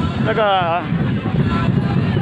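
A man says a few words in Thai, over a steady low rumbling noise that runs throughout.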